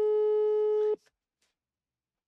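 A mobile phone on speaker playing the Brazilian ringback tone: one steady beep lasting about a second that cuts off sharply. It is the sign that the call is ringing at the other end and has not been answered.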